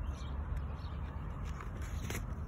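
A picture book's page being turned by hand: faint paper rustle and a few light ticks over a steady low rumble.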